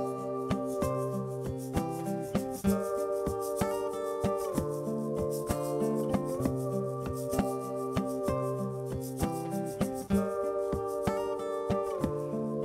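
Acoustic guitar layered through a loop pedal: a chord phrase that repeats about every four seconds, with sharp percussive taps running through it.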